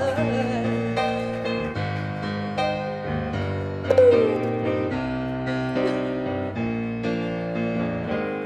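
A woman singing to live grand piano accompaniment. The piano plays sustained chords that change about once a second, and the voice comes in near the start and again, strongest, about four seconds in.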